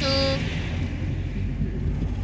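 Steady low rumble of a car's engine and tyres heard from inside the moving car's cabin, with a brief held tone right at the start.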